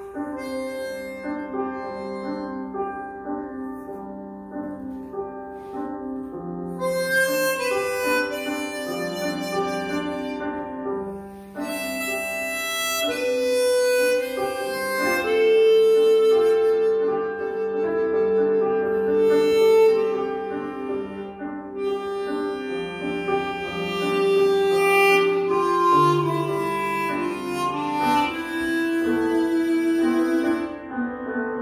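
Chromatic harmonica, a customized Psardo Elite fitted with Kettlewell Resonant Covers, improvising a melody with long held notes over a recorded piano improvisation played back through a loudspeaker.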